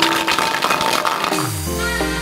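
Background music over a brief rattling of metal hex nuts being shaken in a plastic bottle, ending about a second and a half in with a falling swoop into steady chords.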